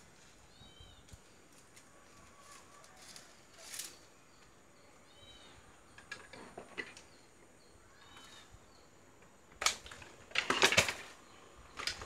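Short bursts of rustling and handling as bonsai wire is worked around the branches of a potted gardenia (kaca piring), loudest a little before the end. A bird chirps faintly three times.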